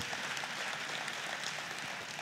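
A seated audience applauding, a steady mass of clapping.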